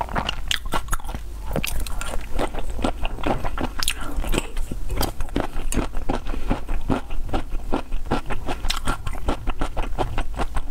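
Close-miked chewing of raw black tiger shrimp in chili oil: a dense run of quick, wet mouth clicks and smacks.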